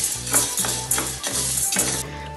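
Wooden spatula stirring dry toor dal in a stainless steel pan: the lentils rattle and scrape against the metal in repeated strokes as they dry-roast, over soft background music.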